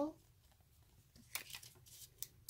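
Plastic packets of nail-sticker sheets crinkling as they are handled: a few short, sharp rustles starting a little past a second in, after a quiet spell.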